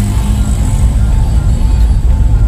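A car driving, heard as a steady low rumble, with background music over it.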